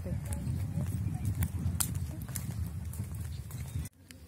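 Wind buffeting a phone microphone outdoors, a low steady rumble with scattered light clicks, cutting off suddenly near the end.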